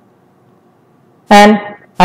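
Only speech: a short pause of faint room tone, then a man's voice saying a drawn-out "and" a little over a second in.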